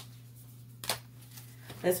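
A card being laid down onto a spread of cards: a small click, then a short sharp papery slap about a second in.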